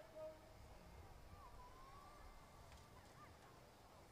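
Near silence: a faint background hush, with a faint wavering tone briefly in the middle.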